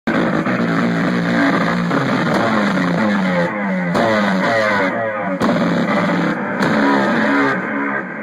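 Live noise-rock played on a drum kit, fast and busy, under loud distorted, buzzing pitched tones that repeat in quick stepping, descending runs.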